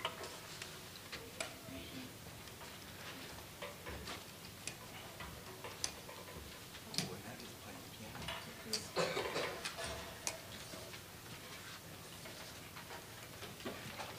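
Scattered light clicks and knocks of music stands being moved and adjusted, with footsteps as performers walk into place. A denser burst of clatter comes about nine seconds in.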